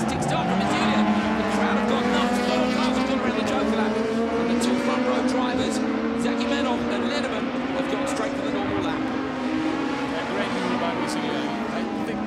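A pack of Super 1600 rallycross cars, 1.6-litre front-wheel-drive hatchbacks, racing at full throttle, their engine notes rising and falling through gear changes, with sharp cracks scattered throughout.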